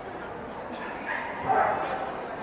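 A dog barks loudly about one and a half seconds in, over the babble of a crowded indoor hall.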